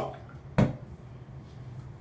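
A plastic bottle of witch hazel handled and tipped onto a cotton pad: a light click at the start, then one short, sharp splash-like sound about half a second in. A steady low hum runs underneath.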